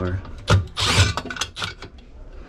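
Cordless drill/driver run briefly on a screw of a sheet-metal electrical cover inside a refrigerator, with a sharp knock and a loud rattling scrape about a second in as the cover comes loose, then lighter clicks.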